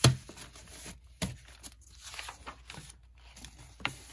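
Sheets of patterned scrapbook paper handled and gathered on a cutting mat: a sharp tap at the start, two more about a second in and near the end, with soft paper rustling between.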